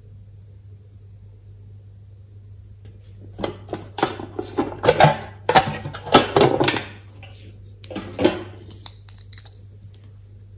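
Hard plastic case being handled and opened: a run of sharp plastic clicks and knocks starting about three seconds in, with a shorter cluster near the end.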